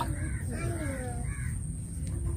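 A bird calling three times in quick succession, short arched calls, over a steady low background rumble.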